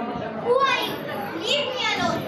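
A child's high-pitched voice speaking lines, amplified through a stage microphone.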